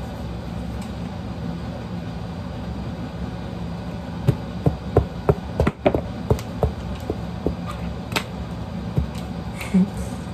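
A steady low background hum. From about four seconds in, a string of a dozen or so short taps and knocks from hands and paper being handled on a wooden table.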